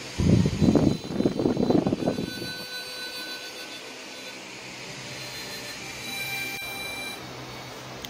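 Air from a large fan buffeting the microphone in loud, irregular gusts for the first two seconds or so, then settling into a steady blowing hiss.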